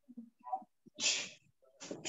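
Sharp, hissing exhalations of a martial artist breathing out with his strikes: one about a second in and another starting near the end, heard through a video-call microphone.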